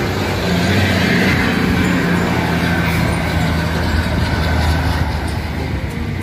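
Engine of a heavy motor vehicle running, a steady low drone with a haze of noise over it.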